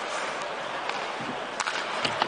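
Ice hockey arena ambience: a steady crowd murmur over skates on the ice, with a few sharp clicks of sticks and puck, about one every half second.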